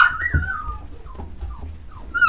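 English Cocker Spaniel puppy whimpering: one loud high whine right at the start that slides down in pitch, then a few faint short whimpers.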